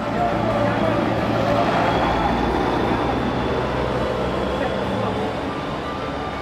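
Road traffic passing close by: a vehicle's engine hum under steady road noise, with indistinct voices in the background.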